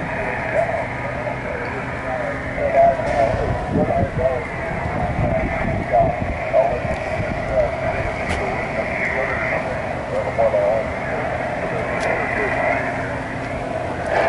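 Another amateur station's voice coming back through the FO-29 satellite, heard from a Yaesu FT-817ND transceiver: thin, narrow single-sideband speech over steady receiver hiss.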